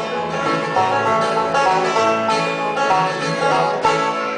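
Live bluegrass band playing an instrumental passage without singing. Banjo, acoustic guitar and mandolin are plucked and strummed together, with a loud accented chord near the end.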